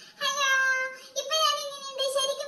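A high-pitched singing voice holding two long, steady notes, with a short break about a second in.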